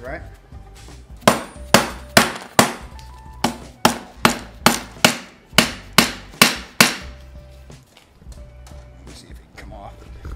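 Dead-blow hammer striking an electric scooter's wheel assembly: about thirteen sharp knocks, roughly two a second, with a short pause after the fourth, starting about a second in and stopping near seven seconds. The blows are meant to knock a stuck part off the wheel's axle, and it does not come free.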